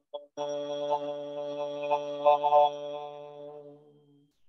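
A man's voice chanting one long, steady 'Ah' on the out-breath, held at a single pitch for about three and a half seconds and fading out near the end.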